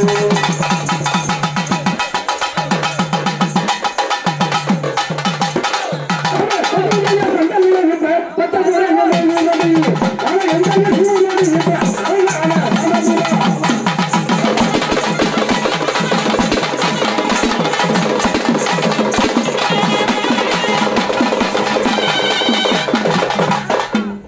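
Live folk dance music: strapped barrel drums played with sticks in a fast, continuous rhythm, with a singer on an amplified microphone over them.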